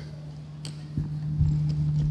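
A few dull thumps of footsteps on the stage, about a second in and again near the end, over a steady low electrical hum from the sound system.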